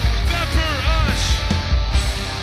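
Live rock band playing: distorted electric guitars, bass and drums, with a pitched part that slides up and down in short arcs through the first second.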